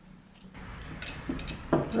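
Faint rustling and a few light clicks from painting supplies being handled. The sound grows slowly louder from about half a second in.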